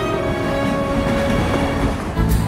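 Freight train hauled by diesel locomotives running along the track, a dense rolling rail noise that takes over as the music fades under it.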